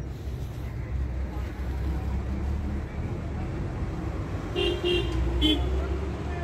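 Steady low street-traffic noise, with a vehicle horn giving three short toots about four and a half to five and a half seconds in.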